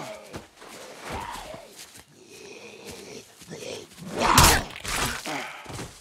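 Walker groans and grunts of a close-quarters struggle, uneven and pitched, with a loud sudden hit about four seconds in.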